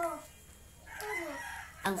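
An animal call: one drawn-out call falling slowly in pitch, starting about a second in, with a woman's voice cutting in near the end.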